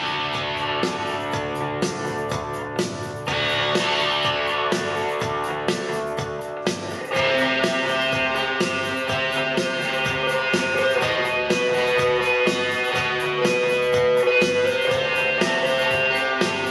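A vinyl LP playing guitar-led music on a Fisher Studio Standard MT-6221 turntable with an Audio Technica M35V cartridge. The music gets fuller about three seconds in and again about seven seconds in.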